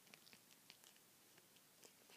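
Near silence, with a few faint, scattered clicks from hands handling a plastic action figure.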